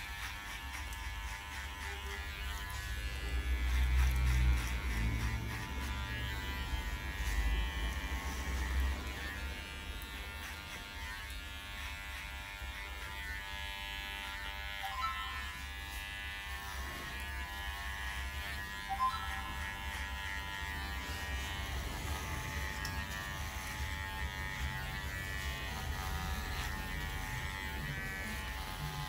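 Cordless electric hair clipper with a 4.5 mm guard buzzing steadily as it cuts short hair on the sides and back of the head, the hum swelling briefly a few seconds in.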